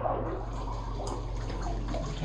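Water sloshing and splashing as people wade through shallow water, over a steady low hum.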